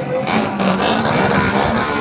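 Small motorcycle engines running at low speed as motorbikes carrying parade floats ride slowly past, a steady engine hum.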